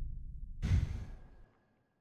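A person lets out one short, breathy exhale like a sigh about half a second in, fading away within a second, after a low sound trails off.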